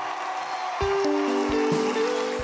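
Applause dies away, and about a second in a live band starts playing, with held chords and low drum hits.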